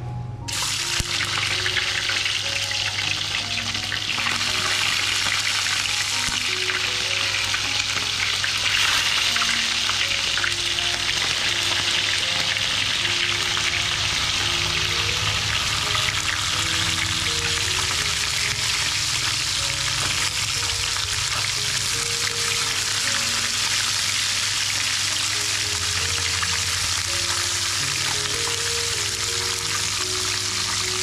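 Whole small mullet frying in a pan of hot oil, a steady, dense sizzle that starts about half a second in.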